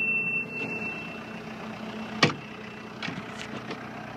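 Case 321D wheel loader's diesel engine idling steadily, with one sharp knock a little after two seconds in.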